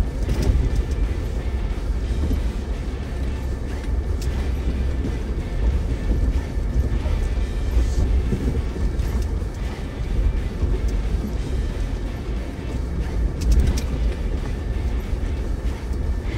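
Off-road 4x4 crawling slowly over a rocky wash: a steady low rumble of engine and drivetrain, with occasional knocks and crunches as the tyres roll over rocks.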